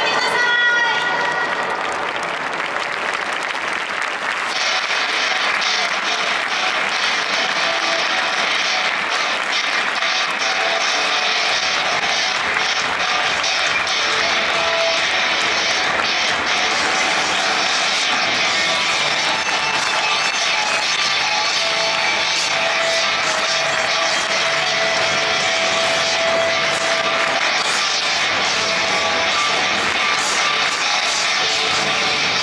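Football stadium crowd noise before kick-off, a steady din mixed with music, thickening about four seconds in.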